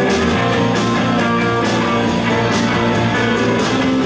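Live rock band playing an instrumental passage, guitar to the fore, over a steady beat.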